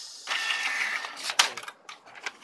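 Canon iP2770 inkjet printer's print mechanism running as it prints and feeds paper: motor and gear noise with a steady whine for about a second, then a sharp click and a second, fainter click near the end.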